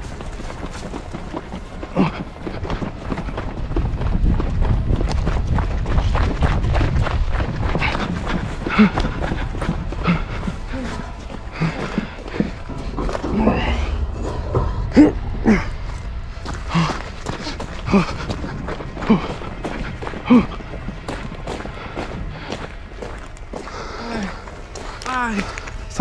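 Handheld-camera jostling and hurried footsteps make a low rumble for the first half, followed by scattered knocks and a man's short pained groans and gasps.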